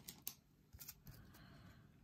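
Near silence, with a few faint short clicks and rustles from a stack of trading cards being handled.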